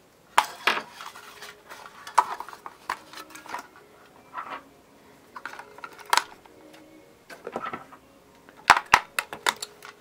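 AA batteries being fitted into the plastic battery compartment of a small toy-style FM radio: scattered clicks, clinks and rattles of the metal cells against the spring contacts and plastic housing, with a few sharper clicks near the end.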